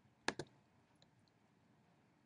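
A computer mouse button clicked: two sharp clicks in quick succession about a third of a second in, then near silence.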